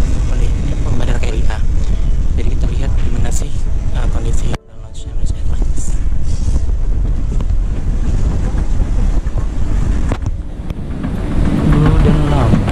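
Steady low rumble of wind and handling noise on a handheld camera's microphone, carried along a moving escalator, with faint background voices. The sound cuts out abruptly for a moment about four and a half seconds in, then returns.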